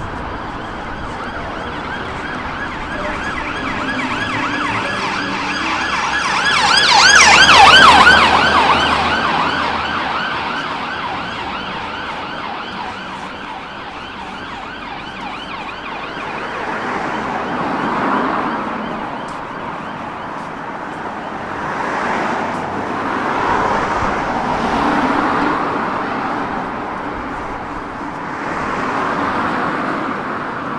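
Emergency vehicle siren with a fast rising-and-falling wail. It grows louder, peaks about eight seconds in and fades away by about twelve seconds. Afterwards road traffic goes by, with several cars passing.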